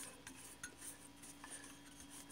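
Near silence with a few faint light clicks and clinks from a metal steam pressure control being handled.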